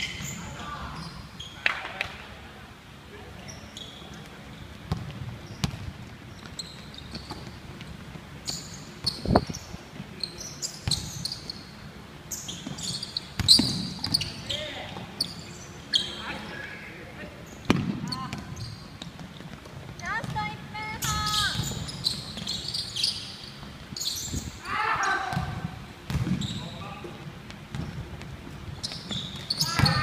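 Basketball game on a wooden gym floor: a ball bouncing and dribbling, sneakers squeaking in short high chirps, and players calling out now and then, all echoing in a large hall.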